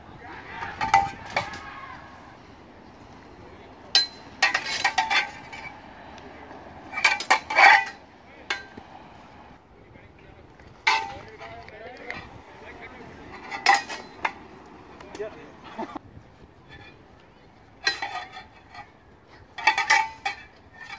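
Steel practice blades of a messer and a sword-and-buckler clashing in sparring: short flurries of a few sharp, ringing clanks each, separated by pauses of one to three seconds.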